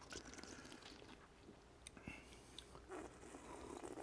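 Near silence with faint sips and small mouth noises from people tasting beer from glasses.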